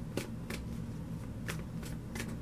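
A deck of oracle cards being shuffled by hand: about four crisp card snaps spread across the two seconds, over a low steady room hum.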